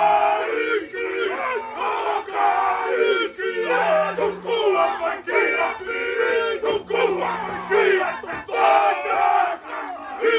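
Group of Māori men performing a haka, chanting and shouting loudly together. A low held note sounds several times beneath the voices.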